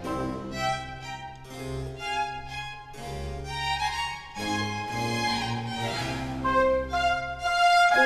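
Baroque orchestral music: violins and lower strings playing a chaconne-style dance air over a held bass line, with harpsichord continuo. A new phrase begins about halfway through.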